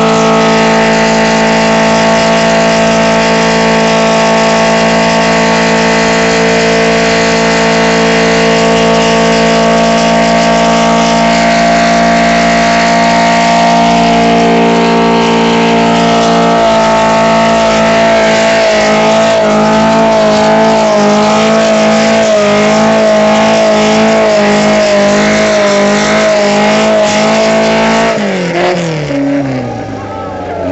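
A Volkswagen Beetle's engine held at high, steady revs during a burnout, rear tyres spinning. About halfway through the revs start bouncing rapidly up and down, and near the end they fall away as the throttle comes off.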